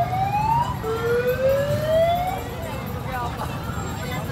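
A siren sounding two rising wails, the second starting about a second in, over the chatter of a street crowd.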